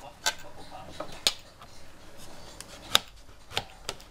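Kitchen knife slicing a zucchini on a plate: a few sharp, irregular taps as the blade goes through and knocks the plate, the loudest about three seconds in.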